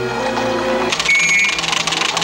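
Film soundtrack music with held tones. About a second in it gives way to a fast, even mechanical clatter with a high ringing tone over it.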